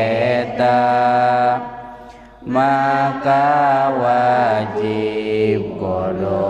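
A man's voice chanting the kitab text in a drawn-out, sung recitation, holding long notes, with a short break about two seconds in.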